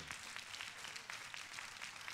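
A congregation applauding faintly: many hands clapping at once in a steady patter, in response to a call to give God praise.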